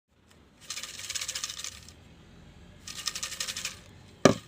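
Folded paper slips shaken in a glass jar, in two bursts of rapid rattling, each about a second long.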